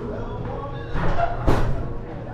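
Background music playing, with a sharp knock about one and a half seconds in as a glass entrance door swings shut.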